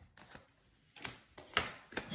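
Tarot cards being handled: a few faint, light clicks and taps, irregularly spaced.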